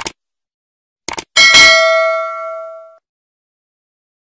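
Subscribe-button animation sound effect: a click at the start, a quick double click about a second in, then a single bell ding that rings out and fades over about a second and a half.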